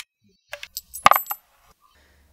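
Metal flute handled and fingered, its keys and joints clicking and clinking: a cluster of sharp metallic clicks with a brief ring, loudest about a second in.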